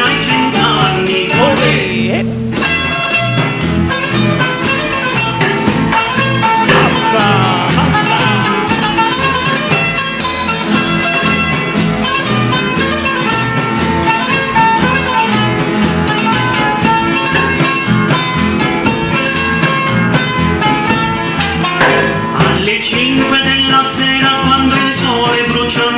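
Band music with guitars over a steady bass beat, played as an instrumental passage between sung verses.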